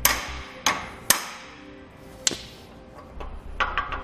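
A hammer knocks a push-on pressure cap onto the end of a boat trailer bow roller's shaft, to lock the roller in place. It makes four sharp, unevenly spaced blows in the first two and a half seconds, then a few lighter taps near the end.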